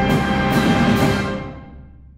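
Full wind band holding a loud sustained chord over drums, with two drum strokes about half a second apart. About a second and a half in, the chord is released and the hall's reverberation dies away: the closing chord of the piece.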